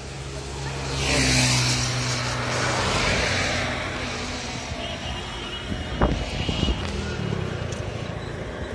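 A road vehicle passing close by, its engine hum and road noise swelling to a peak and then fading over a few seconds. A sharp knock follows about six seconds in.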